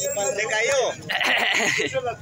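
Men's voices calling out during an outdoor ecuavolley game, then a loud, high, drawn-out cry that lasts nearly a second, starting about a second in.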